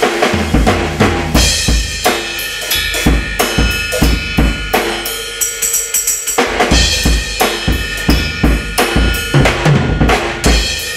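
Acoustic drum kit played steadily, with kick drum, snare and cymbals, picked up by a Yamaha EAD10 drum mic system's built-in stereo mics and heard dry, with no effects or reverb added.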